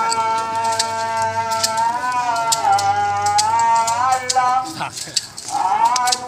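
A voice chanting in long, held, wavering notes, over sharp slapping clicks a couple of times a second, typical of a flagellant penitent's whip striking his back. The chant breaks off briefly near the end and comes back on a rising note.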